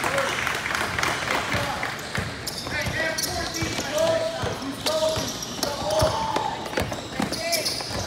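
A basketball bouncing and dribbling on an indoor court, with repeated sharp impacts throughout, amid players' and spectators' voices echoing in a large gym.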